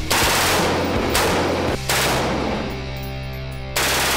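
Bursts of fully automatic rifle fire: one lasting about a second, a short burst just after, and another starting near the end, over background music.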